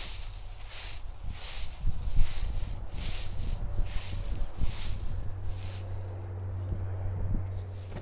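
Footsteps crunching through dry fallen leaves on grass, about two steps a second. A low steady hum sits under them in the second half.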